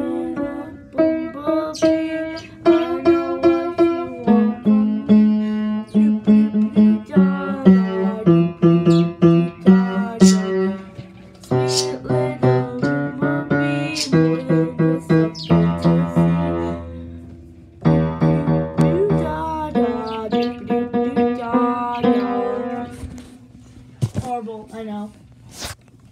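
Upright piano being played: a run of struck notes and repeated chords that thins out and stops about three seconds before the end.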